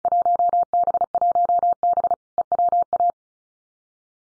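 Computer-generated Morse code at 35 words per minute: a single steady tone near 700 Hz keyed in rapid dots and dashes for about three seconds, sending the Field Day contest exchange 1B Eastern Washington.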